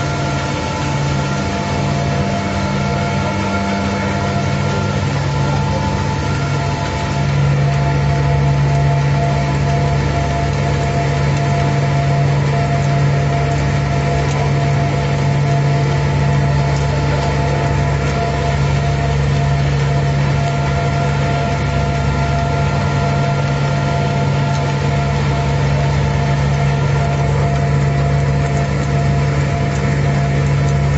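Volute screw press sludge-dewatering machine running, with a steady hum from its motor-driven screws and several steady whining tones over a mechanical noise; the hum grows a little louder about seven seconds in.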